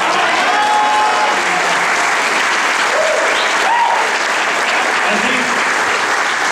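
Audience applauding steadily, with a few voices calling out over the clapping.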